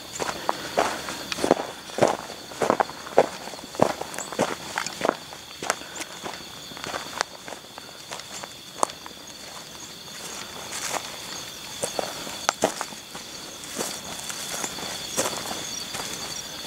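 Footsteps in tennis shoes on dry, stony ground and through grass and brush, roughly one to two steps a second, with the steps growing sparser in the second half. Under the steps is a steady high-pitched drone.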